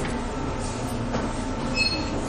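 A pause in a sung Qur'an recitation: no voice, only a steady rushing background noise picked up by the reciter's microphone.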